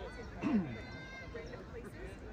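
Several voices talking and calling at a distance, with one louder call falling in pitch about half a second in.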